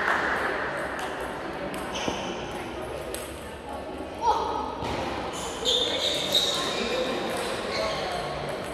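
Echoing sports-hall ambience between table tennis points: a murmur of background voices with scattered sharp clicks of table tennis balls and a few short high-pitched squeaks in the second half.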